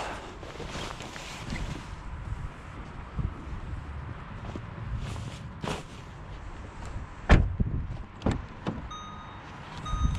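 Rustling of a jacket and knocks from handling inside a car's rear seat area, with one sharp thump about seven seconds in. Near the end a short electronic car chime begins repeating.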